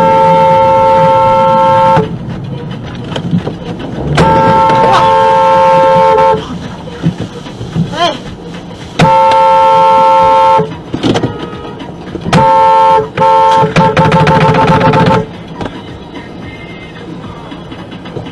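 Car horn honking in repeated long blasts, then shorter ones, ending in a rapid string of quick beeps, aimed at an SUV cutting in close alongside.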